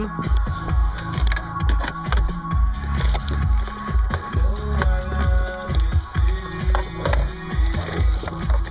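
Electronic dance music with a steady bass beat, about two beats a second, playing through a car's speakers from an iPod streamed over a Bluetooth receiver into an aftermarket amplifier.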